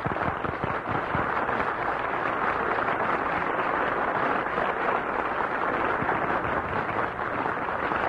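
Studio audience applauding steadily on a 1942 radio broadcast recording, greeting the star after his introduction.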